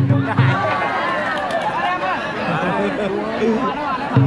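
A few last strokes of a large festival drum about half a second in, then a crowd of spectators chattering and calling out together, many voices overlapping.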